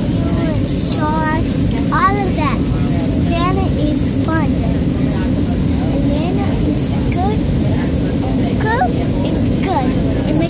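Steady, loud rumble of airliner cabin noise. Over it, a young child's high voice goes on and off in sliding, sing-song pitches without clear words.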